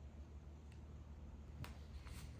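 Very quiet room tone with a low steady hum, broken by a faint tick less than a second in and a sharper small click near the end.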